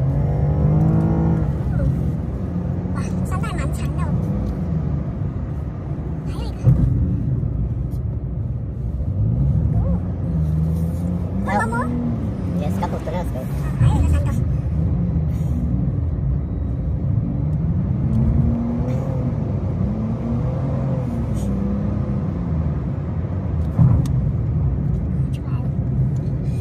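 Steady drone of a car's tyres and engine heard from inside the cabin while driving, with a person's voice rising and falling over it now and then. A few brief knocks stand out, about a third of the way in, halfway and near the end.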